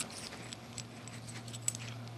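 Faint metal handling sounds: the piston of a .21 nitro engine slid up and down in its brass cylinder sleeve, giving a few light clicks over a steady low hum.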